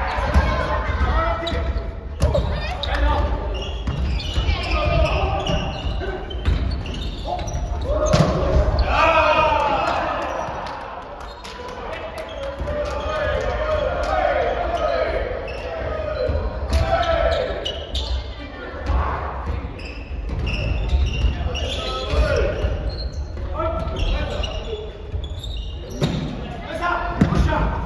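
Several players' voices calling out across a gymnasium, mixed with repeated sharp thuds of a volleyball being hit and bouncing on the wooden floor. It all echoes in the large hall.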